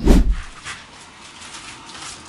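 Background electronic music stops with one final low bass hit, then quiet room noise with a few faint soft clicks.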